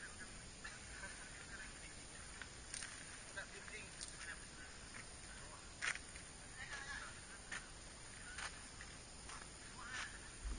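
Faint, distant chatter of a group of people, with a few sharp clicks at irregular intervals.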